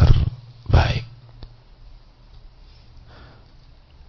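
A man's voice speaking in the first second, in short bursts, then a pause of about three seconds in which only a low steady hum of the recording remains.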